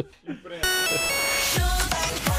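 Electronic music sting of a broadcast bumper starting about half a second in: a rushing swell with bright, bell-like steady tones, then a falling sweep into a deep bass hit near the end.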